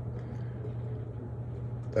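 Steady low hum with a faint background hiss, unchanging throughout, and no other event.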